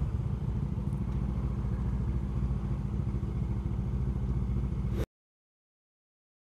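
Honda CBF500 parallel-twin motorcycle engine idling steadily while stopped in traffic. It cuts off abruptly to silence about five seconds in.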